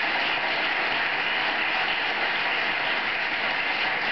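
Audience applauding steadily: dense, even clapping from many people.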